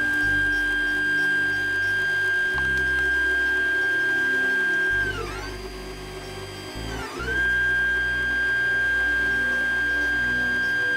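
3D printer's stepper motors whining at a steady high pitch as the print head lays down the first layer, over the steady whir of the hotend fan. About five seconds in the whine slides down and drops away as the moves slow, and about two seconds later it slides back up to the same pitch.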